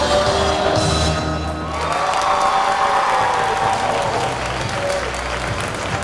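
Audience applauding and cheering over upbeat dance music as a dance routine ends.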